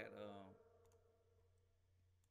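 A few faint computer-mouse clicks in near silence, after a man's voice trails off in the first half second.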